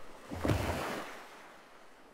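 AI-generated sound effect of waves crashing against rocks inside a cave: a rush of surf that swells loud about half a second in, then fades steadily away.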